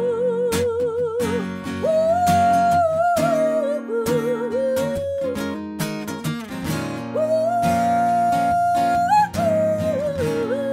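A woman singing with vibrato to her own strummed acoustic guitar, holding one long note about two seconds in and another from about seven seconds in.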